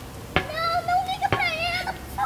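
A child's long wordless vocal held near one pitch, wavering slightly and broken once, with two sharp clicks about a second apart.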